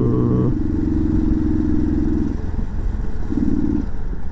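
Mondial RX3i Evo's single-cylinder engine stumbling as the fuel tank runs dry. It runs steadily, cuts out a bit over two seconds in, then catches again briefly near the end, over steady wind and tyre noise. This on-off running is fuel starvation at the end of the tank.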